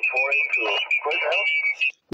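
A distant station's single-sideband voice received on a Yaesu FT-817 transceiver and heard through its speaker, thin and narrow, with a steady high whistle under it that stops just before the end: a carrier sitting on the frequency.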